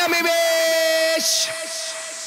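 A man's drawn-out vocal shout, one steady pitch held for about a second and then fading, over a stripped-down dance-track breakdown with no bass.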